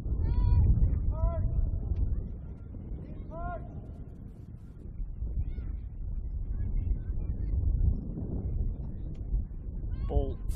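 Outdoor football pitch ambience from the field microphone: a steady low rumble, with three short high calls, each rising then falling, in the first four seconds.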